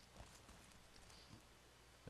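Near silence: room tone with a few faint soft taps.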